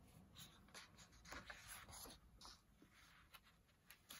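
Faint rustling and swishing of a paper page being turned by hand in a paperback colouring book, mostly in the first couple of seconds.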